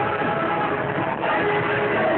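Loud music over a venue sound system, sounding muffled with no high end, with long held notes.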